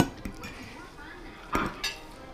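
Metal forks clinking and scraping on dinner plates: a sharp clink at the start and a short scrape near the end.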